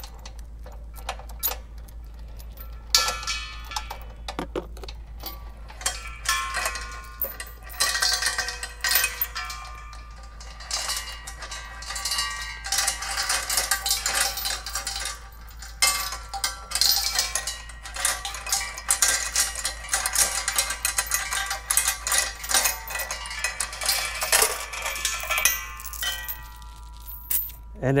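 A steel chain and padlock being unwound from two steel propane cylinders, with a long run of metallic rattling and clinking. Links knock against the tanks and ring. It starts sparsely and becomes almost continuous from about three seconds in until just before the end.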